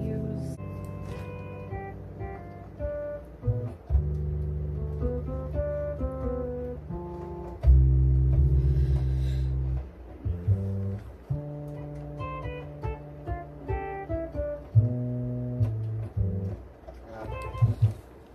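Synthesizer music: a melody of short plucked-sounding notes over long held bass notes, with the loudest held low chord about halfway through.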